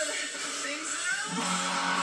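Electric guitar playing a rock riff: quick picked notes, then a low chord held and ringing from a little past halfway.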